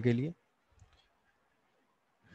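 A man's speech ends shortly after the start, followed by a single faint click a little under a second in, then quiet room tone.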